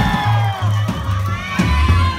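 Electric bass guitar playing a short run of low, separate notes, stepping lower near the end, while the audience cheers and whoops in a club.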